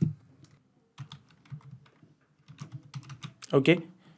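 Typing on a computer keyboard: a quick run of keystrokes starting about a second in, entering a search term.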